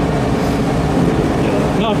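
A steady low mechanical drone, the kind an idling engine or nearby machinery makes. A man's voice cuts in briefly near the end.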